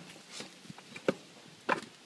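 A few light knocks and scrapes as a lawn tractor wheel, tire on, is turned by hand on its stand.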